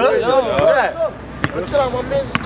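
A basketball bouncing once on asphalt, a single sharp slap about halfway through, under men's overlapping greetings.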